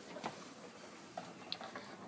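A few faint, short clicks and light taps while someone steps through an open front storm doorway into a carpeted room.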